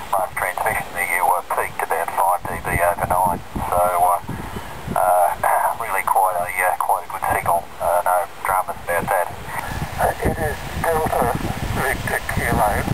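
A voice on 40-metre single sideband (7160 kHz lower sideband) coming out of the small front-panel speaker of the home-built Knobless Wonder transceiver: continuous talk that sounds thin, like a telephone.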